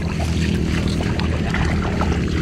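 A motor running steadily at an even pitch, with small clicks and rustles of a fish and net being handled.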